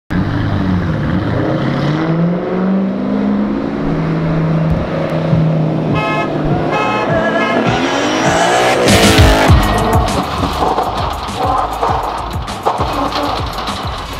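Two Ford Mustangs driving past together, their engines rising in pitch as they speed up, with a horn sounding twice about six seconds in. The engines are loudest as the cars go by about nine seconds in, then music with a beat takes over.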